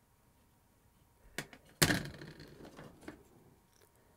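A sharp click, then a louder knock with a short clatter that dies away over about a second, and a last small click, in a quiet small room.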